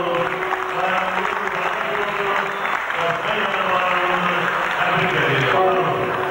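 An audience applauding steadily throughout, with a man's voice coming through a microphone and PA over the clapping.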